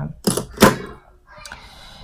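Lipstick tubes being handled on a tabletop: a sharp clack just over half a second in, as one tube is put down and the next, a Clinique lipstick, is picked up and opened, then a soft rustle of handling.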